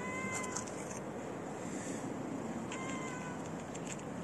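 A cat meowing twice: two short, even-pitched meows about two and a half seconds apart.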